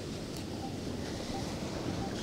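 Steady wind noise on the microphone over the wash of surf.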